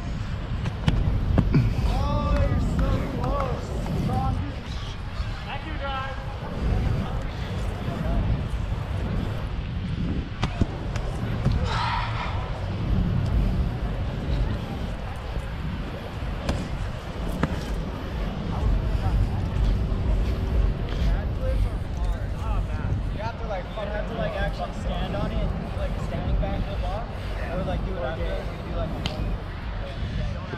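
Wind rumbling on the microphone, with people's voices talking and calling now and then and a few dull thuds.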